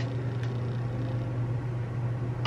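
A steady low hum from an indoor appliance, with a faint click about half a second in.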